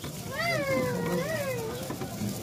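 A long, high-pitched, wavering cry that rises and falls in pitch, lasting about a second and a half.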